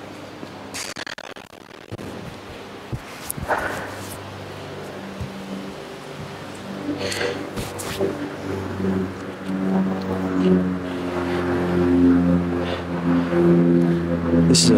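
A golf iron strikes a ball off an indoor hitting mat with a sharp crack partway through, among a few lighter knocks. In the second half, background music with sustained low notes comes in and grows louder.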